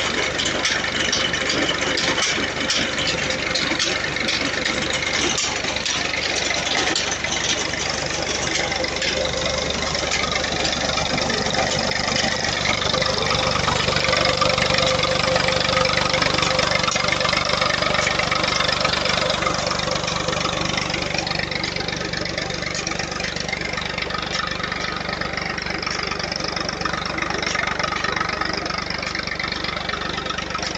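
Massey Ferguson 240 tractor's three-cylinder diesel engine running steadily, driving the pump of a new tubewell.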